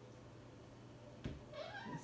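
A house cat meowing once near the end, one call that rises and then falls in pitch, just after a soft knock.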